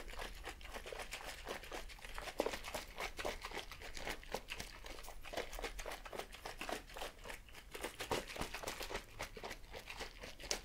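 A liquid cocktail with no ice being shaken in a clear plastic cup with a snap-on pink lid: fast, irregular sloshing with dense plastic clicks and crinkles.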